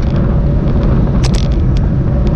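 Wind buffeting the microphone of an action camera on a moving road bike: a loud, steady rumble with road noise, broken a little over a second in by a short cluster of sharp rattles.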